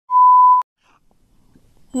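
A single steady electronic beep at one pitch, lasting about half a second and cut off sharply: a TV colour-bar test tone.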